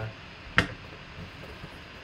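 A single sharp snap about half a second in as a craft knife cuts through the tape seal on a cardboard box, then only faint room hiss.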